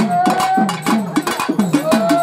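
Devotional bhajan music: a hand-played drum beats a quick rhythm of low strokes that drop in pitch, with sharp metallic clicks of percussion over it. A long held note slides up slightly at the start and again near the end.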